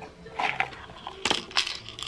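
Dried beans and cereal rattling and clattering in a plastic sensory bin as a small child's hand digs through them, in several short, sharp rattles.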